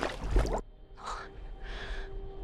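A young woman's breathy whispered 'why', loudest in the first half-second, followed by two short sharp gasping breaths about a second in and near the end. A low rumble and a faint steady hum run underneath.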